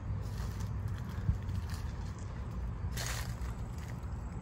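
Footsteps on a dry, leaf-strewn dirt path and brush rustling as someone walks through undergrowth, over a steady low rumble of handling or wind on the microphone, with a small knock about a second in.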